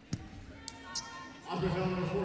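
A basketball bounces once on the court just after the start, over quiet arena background with a couple of faint clicks. A voice comes in near the end.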